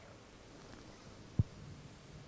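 A quiet draw on an e-cigarette, a Kayfun Lite Plus tank firing a 1.8-ohm kanthal coil at 11 watts, with a faint hiss in the first second. One soft, low thump comes about one and a half seconds in.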